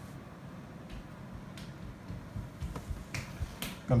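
Scattered faint clicks and light taps as a wire dehydrator tray with a sheet of raw cracker dough is handled and eased into place.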